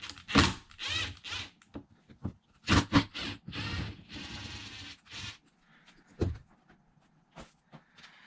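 Cordless electric screwdriver running in short bursts as it backs out the screws on an RC car, with one longer run in the middle. Sharp clicks of small parts being handled follow near the end.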